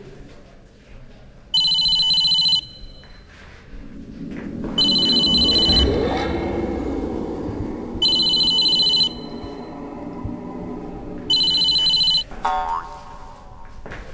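A mobile phone ringing with an electronic ringtone: four rings of about a second each, roughly three seconds apart.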